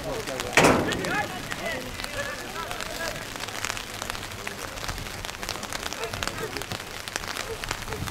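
Rain falling on umbrellas, many short drop clicks over a steady hiss, with faint shouting voices in the first few seconds. A single loud thud about half a second in.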